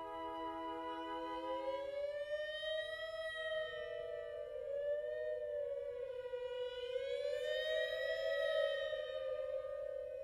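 Wind ensemble playing a passage in free, graphic-style notation. A steady held chord gives way about two seconds in to several held notes that slide slowly up and down in pitch, overlapping one another.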